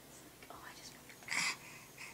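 Soft whispering, with one short, louder breathy burst about halfway through.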